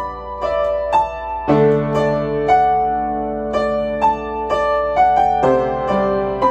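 Upright piano played solo: a slow melody of single notes, about two a second, over sustained chords, with deeper bass notes coming in about one and a half seconds in and again near the end.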